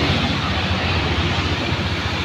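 Steady road traffic noise from motor vehicles passing on a street, mostly a low rumble.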